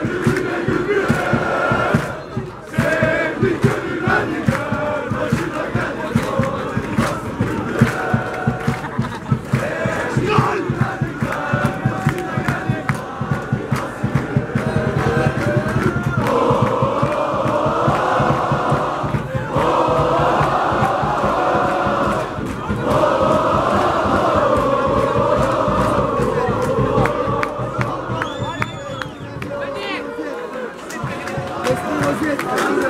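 Football supporters in the stands chanting together at full voice, over a steady, quick beat. About halfway through the singing swells into a stronger, more unified chant.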